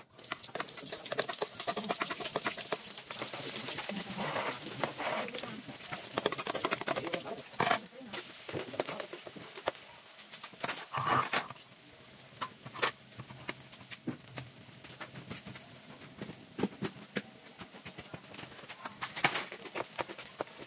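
Chopped onion and garlic dropped into hot oil in a steel wok, sizzling at once, the frying easing off after about ten seconds. A metal spoon stirs and scrapes through it, with a few sharp clinks against the pan.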